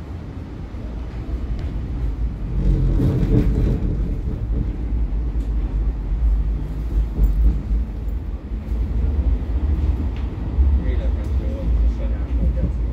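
Cabin sound of a Siemens Combino low-floor tram running between stops: a steady low rumble from the wheels and running gear, louder from about two seconds in, with a busier stretch around three seconds in and a faint motor whine near the end.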